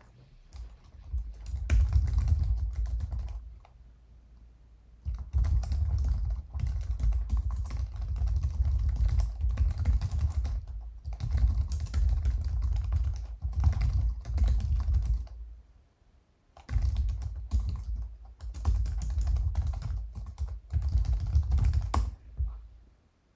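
Typing on a computer keyboard: rapid keystrokes in three runs, with short pauses about four seconds in and about sixteen seconds in.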